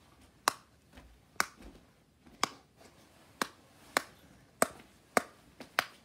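Silicone pop-it fidget toy being popped bubble by bubble with the fingers: sharp single pops about every half second to a second, around nine in all.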